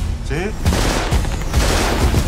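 Rapid automatic gunfire, a dense fusillade of shots, with bullets striking metal, over a deep low rumble. The burst starts about half a second in, just after a short spoken line.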